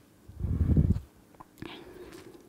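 A breath puffing into the microphone: one short, muffled, low-pitched gust about half a second in, followed by a faint click.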